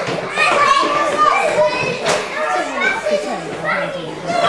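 Young children chattering and calling out over one another as they play, with a single sharp knock about halfway through.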